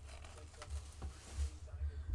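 Faint handling noise, a few light clicks and a soft rustle, from hands moving around the stack of foil trading-card packs.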